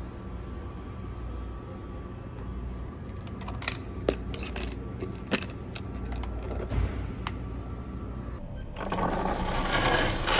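A few sharp clicks of collapsible dog bowls being handled, then, from near the end, dry dog kibble pouring from a countertop dispenser into a bowl with a dense, growing rattle.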